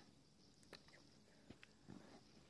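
Near silence broken by a few faint clicks: magnetic toy rods snapping onto steel balls as a construction-set pyramid is built.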